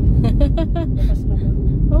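Steady low rumble of a car's engine and tyres on a concrete road, heard inside the cabin, with people talking over it and a laugh near the end.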